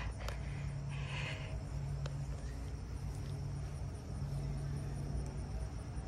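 Quiet outdoor background: a steady low hum with a few brief, soft rustles.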